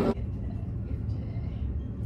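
Low steady rumble inside a passenger train carriage, coming in right after a sudden cut from busy crowd noise.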